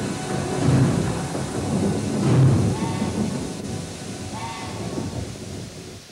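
Thunder rumbling twice over steady rain, with music faint beneath it. The whole sound fades out toward the end.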